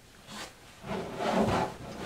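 A board carrying a mounted model airplane engine being slid and turned on a tabletop, a soft rubbing scrape that starts about a second in.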